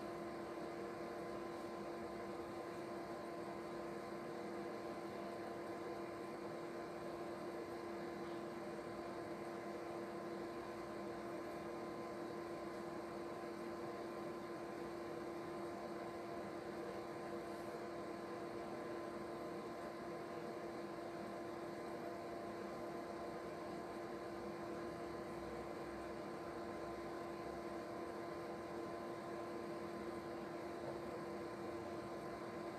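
A steady hum holding several fixed tones over a faint hiss, unchanging throughout.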